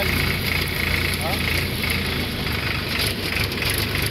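Farm tractor's diesel engine running steadily.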